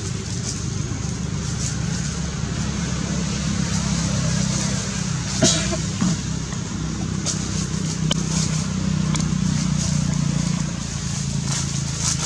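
A steady low motor hum, with a few short clicks and a brief louder sound about five and a half seconds in.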